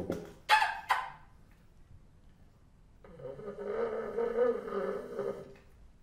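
Solo bassoon playing avant-garde music: a few short, sharp attacks in the first second, a pause, then from about three seconds in a held, wavering note lasting about two and a half seconds.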